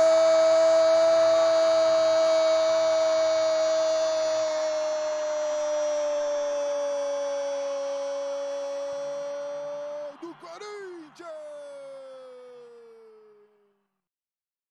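A Brazilian football narrator's drawn-out goal cry, one long held "gooool" of about ten seconds that sinks slowly in pitch. Near the end the voice breaks briefly and goes into a second, shorter held call that falls in pitch and fades out.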